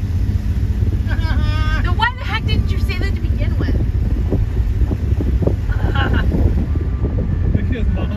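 Vehicle engine and road noise heard inside the cab while driving, a steady low rumble with some wind buffeting. A voice carries over it briefly about a second in.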